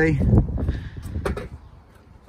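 Wind buffeting the microphone outdoors with a few light handling knocks, fading after about a second and a half.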